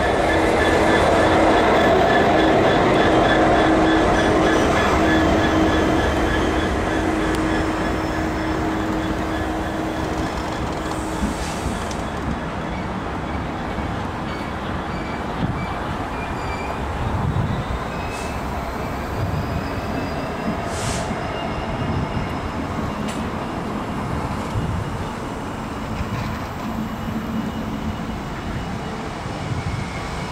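A convoy of Class 66 and Class 70 diesel locomotives passing slowly along a platform. It is loudest in the first few seconds as the leading locomotive goes by, then settles into a steady rumble of engines and wheels over the rails. Thin, high wheel squeals come and go in the middle part.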